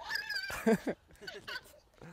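A woman's voice coming through a phone's loudspeaker, thin and high-pitched, answering in a rising, wavering tone. A brief lower voice follows about halfway through.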